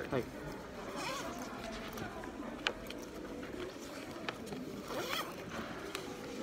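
Handling noise of a black fabric shoulder bag and a paper card, with a couple of sharp clicks. Faint voices of other people are in the background.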